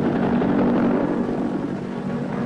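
Helicopter in flight: a steady rotor and engine din, loudest in the first second and easing slightly after.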